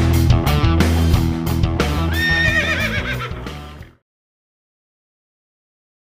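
Rock intro music with a horse whinnying over it from about two seconds in, a wavering call that falls in pitch. The music and the whinny fade and cut off about four seconds in.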